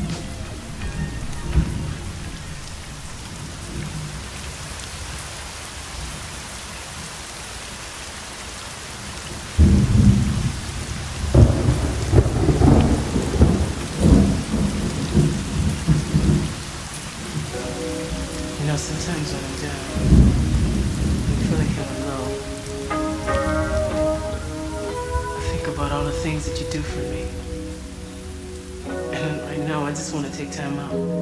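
Steady rain, with thunder rumbling heavily from about ten seconds in and again around twenty seconds. Soft pitched music notes fade in over the rain in the second half.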